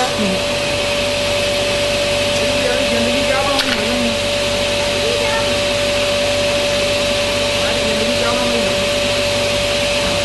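Sliding-table saw's motor and blade running steadily at speed with a constant whine, with one sharp click a little past three and a half seconds.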